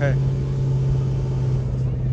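Steady low mechanical drone of the paddle boat's engine running while the boat is under way.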